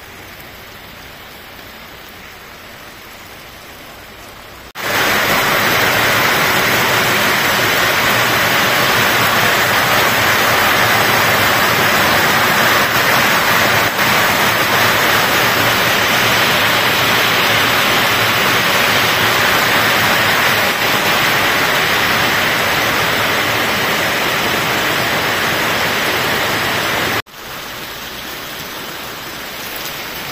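Steady rain falling on open ground, an even hiss that jumps suddenly much louder about five seconds in and drops back just before the end.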